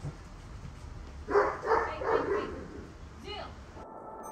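A Doberman barks three times in quick succession, then gives one shorter, higher call about a second later; the sound cuts off suddenly just before the end.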